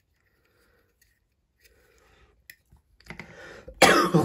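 A man coughs loudly near the end, after a breathy build-up; before it there is a single small click.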